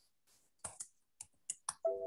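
Computer keyboard typing: about five separate sharp key clicks. A short steady tone starts just before the end.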